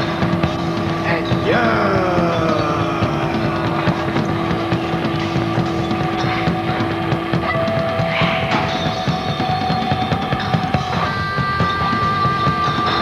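Instrumental stretch of a noisy punk rock song: electric guitar holding long sustained notes, with downward pitch slides near the start, over bass and drums. The held note steps up in pitch twice, about halfway through and again near the end.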